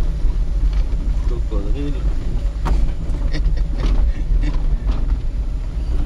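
Car cabin noise while driving with the window open: a steady low rumble of engine and tyres, with several sharp knocks and rattles as the car goes over a rough unpaved road.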